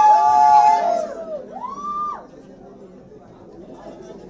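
A group of people cheering, with held shouts that die away about a second in, then one long call that rises and falls in pitch, then low chatter.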